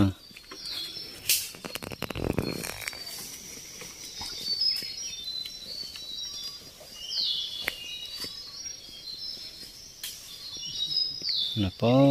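Wild forest birds calling: many short, high chirps and two quick falling whistled notes, about seven and eleven seconds in. A knock and a brief rustle of undergrowth come in the first few seconds.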